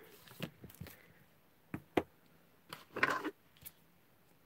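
Hands handling plastic stamping supplies, an ink pad case and clear acrylic stamp blocks, on a desk: quiet rustling with two sharp clicks about halfway through, a short scraping rustle near the three-second mark, and one more light click after it.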